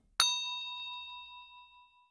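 Notification-bell sound effect: a single bright ding, struck a moment in, that rings and fades away over nearly two seconds.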